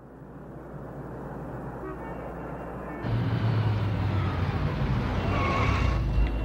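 A low, steady vehicle rumble fades in from silence and gets louder about halfway through.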